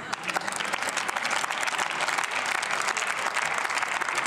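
Applause from members of parliament in a large plenary chamber, breaking out all at once and keeping up at a steady level.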